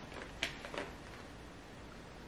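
A light click about half a second in, then a couple of fainter taps: small liquid lipstick packages being handled and picked out of a box. Otherwise faint room tone.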